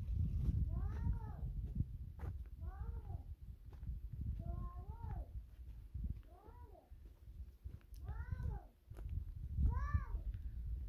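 An animal giving short calls that rise and fall in pitch, about six in all, roughly one every one and a half to two seconds, over a steady low rumble.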